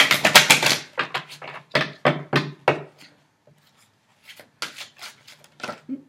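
A deck of tarot cards shuffled by hand: a quick rattling run of card flicks at the start, then a string of separate sharp card slaps, fewer and fainter in the second half.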